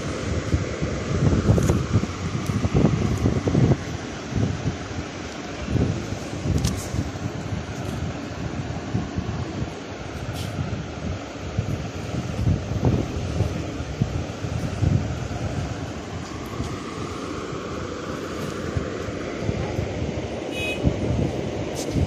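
Steady rumbling background noise with irregular low thuds throughout, like wind or handling noise on a microphone.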